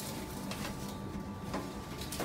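Metal baking tray being slid out of a countertop oven: a couple of light clicks and scrapes, about half a second and a second and a half in, over a steady hum.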